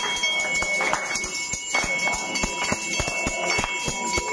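Hanging brass temple bell rung over and over by hand, its steady ringing tone running on under a quick, uneven string of sharp strikes and hand claps.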